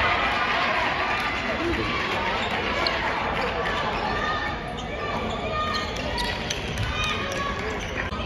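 Many voices talking and calling over one another in a gymnasium, with scattered sharp slaps as the players' hands meet in a handshake line.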